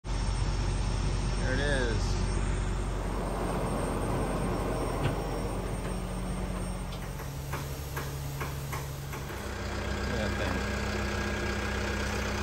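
Heavy diesel engine idling steadily, with a few short clicks or knocks a little past the middle.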